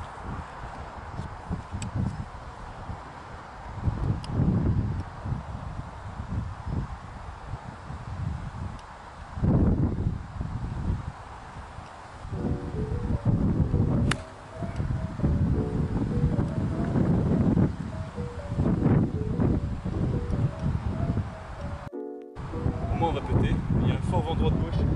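Wind buffeting the microphone in repeated gusts, with background music coming in about halfway through.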